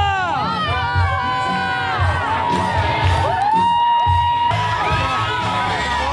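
A large crowd of marathon runners cheering and whooping, many voices shouting over one another, with one long held call through the middle. Music with a steady bass beat plays underneath.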